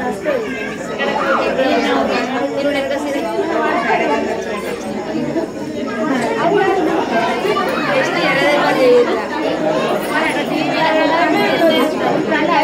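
Many people talking at once: a steady hubbub of overlapping voices with no single voice standing out.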